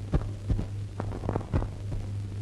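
Steady low hum from an old film soundtrack, with about five soft, irregularly spaced low thumps over it.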